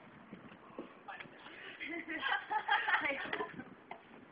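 Indistinct voices talking, loudest through the middle of the stretch, with no clear words.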